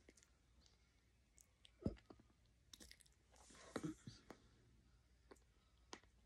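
A person chewing food close to the microphone, with wet mouth clicks and smacks, busiest around the middle; a single sharp knock about two seconds in is the loudest sound.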